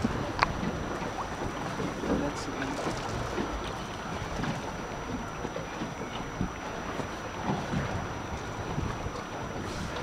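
Wind buffeting the microphone and choppy water around a small boat on open sea: a steady, even rush.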